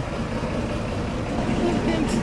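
Diesel multiple-unit railcar idling while it stands at the platform before departure, a steady low running sound, with faint voices near the end.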